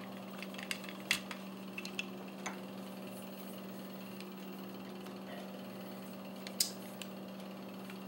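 Faint clicks and knocks from a stainless 1911 pistol and a trigger pull gauge being handled and set on a padded mat, a sharper click about six and a half seconds in, over a steady low hum.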